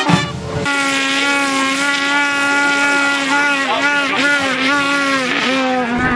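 Bagpipes sounding one sustained note that comes in about half a second in. The note holds steady, then wavers and dips in pitch several times in the second half. The tail of a brass band is heard at the very start.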